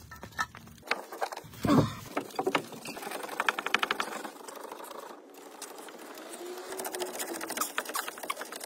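Ratchet wrench clicking rapidly as it works a brake caliper bolt, with a louder knock about two seconds in.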